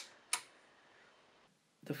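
The LINE push-button on an HP E3611A bench power supply is pressed to switch the supply off, giving two sharp clicks about a third of a second apart.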